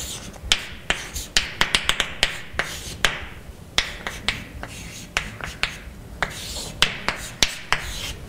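Chalk writing on a blackboard: irregular sharp taps and short scratching strokes, bunched quickly in places as symbols are written.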